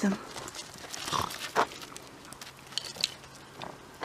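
A dog making a few short sounds spread across a few seconds while playing with a toy.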